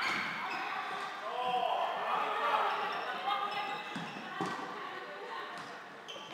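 Floorball game play in a large sports hall: players' voices calling out across the court, with a couple of sharp clacks of sticks on the plastic ball about four seconds in.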